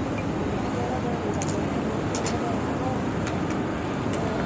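Steady outdoor background noise with faint, distant voices and a few light clicks.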